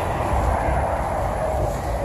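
Steady low rumble and hiss of outdoor background noise, with no distinct event standing out.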